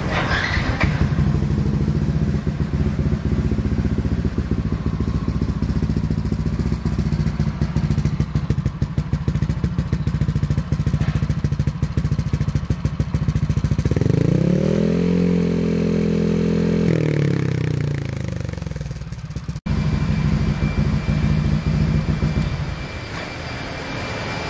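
A modified Yamaha NMax 155 scooter's single-cylinder engine idling with a fast, even putter. About halfway through it is revved up once, held for a few seconds, then drops back to idle.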